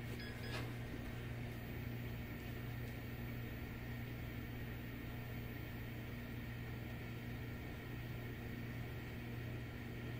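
Steady low hum with a faint hiss from a running desktop workstation's fans, with a faint click about half a second in.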